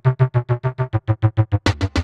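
Heavily saturated LinnDrum low-conga sample, retuned note by note so that it plays as a bass line: about eight short pitched hits a second, like a funny little bass patch. Near the end, sharper, brighter hits join in.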